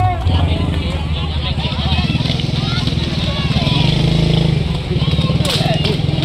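A small motorcycle engine running close by, an even low pulsing that swells for about a second in the middle, with people talking over it.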